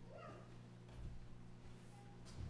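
Near silence: quiet room tone with a steady low hum, broken by one brief, faint high squeak near the start.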